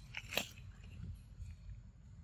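A young macaque biting into and chewing a piece of ripe mango. There is a sharp wet bite sound about a third of a second in, then softer chewing.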